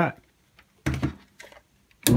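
A handheld digital multimeter is set down on a wooden workbench with a short knock about a second in, followed by a couple of faint clicks of handling. The rest is quiet.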